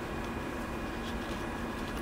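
Steady low background hum of room noise, with no distinct events standing out.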